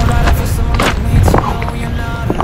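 Irregular knocks of running footsteps on a boulder beach, shoes striking the rounded stones and loose rocks knocking together, over a song playing in the background.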